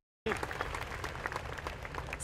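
Audience applause, many hands clapping. It cuts in just after a brief moment of silence at the start.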